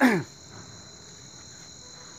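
Crickets chirring steadily, a continuous high-pitched drone. At the very start, a brief loud pitched sound falls sharply in pitch and stops within a quarter second.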